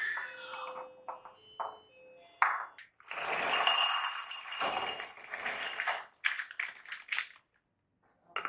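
Dry penne pasta poured from a packet into a glass jar, a dense rattling patter lasting about three seconds. Before it come ringing clinks of a lid being fitted onto another glass jar, and a few sharp clicks of pasta and glass follow.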